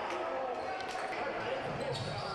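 Faint, echoing sound of a futsal game in play inside a large sports hall, with ball contacts on the hardwood court and distant players' voices.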